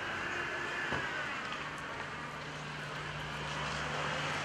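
Steady outdoor background noise with a constant low hum underneath, with no music or speech.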